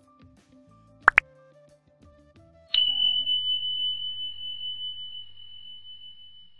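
Soft background music, with two quick plop sound effects about a second in. Just under three seconds in comes a single bright bell-like ding that rings on and slowly fades: the end-screen subscribe and notification-bell sound effect.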